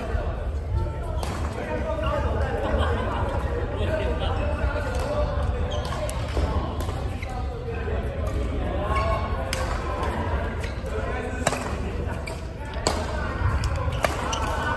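Badminton rackets striking a shuttlecock, a handful of sharp smacks spread through the rally with the loudest two near the end, echoing in a large sports hall. Players' voices chatter throughout over a steady low rumble.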